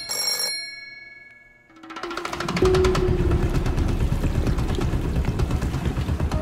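An old telephone's bell stops ringing just as it begins, its ring dying away over about a second and a half. From about two seconds in, loud, dense soundtrack music swells in and holds.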